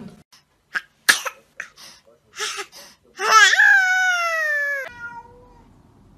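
Domestic cat making a few short sounds, then one long drawn-out meow about three seconds in, falling slightly in pitch before it stops.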